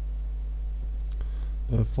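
A few faint computer mouse clicks about a second in, over a steady low hum.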